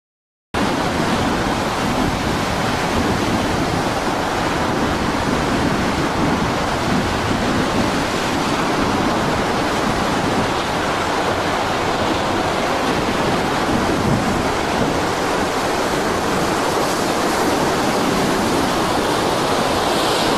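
Steady rush of storm wind and rough sea, an even noise with no let-up that starts abruptly about half a second in.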